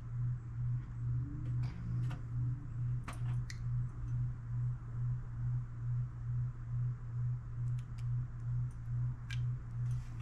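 A steady low hum pulsing evenly about twice a second, with a few light clicks of small metal parts as the float and inlet needle of a Honda GCV190 carburetor are handled and fitted.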